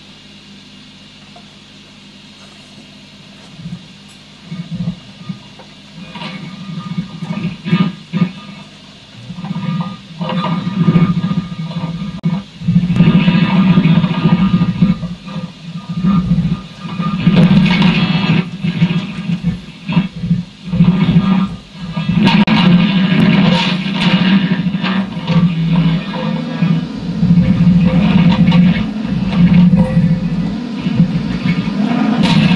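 Electric guitars playing free improvisation through effects. It opens with a few sparse, separated notes and builds to steady loud playing about twelve seconds in.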